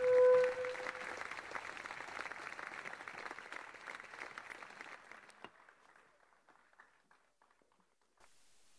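Audience applauding, the clapping thinning and fading out over about five seconds, with the last held note of the music dying away in the first second.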